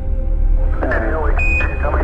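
Ambient soundtrack music with a steady low drone. In the second half a short burst of radio-transmitted voice from archival Apollo 11 mission audio is heard, with a single high beep like a NASA Quindar tone near the end.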